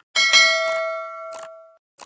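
Bell 'ding' sound effect that accompanies the animated notification-bell click: two quick strikes that ring and fade over about a second and a half, followed by a short click.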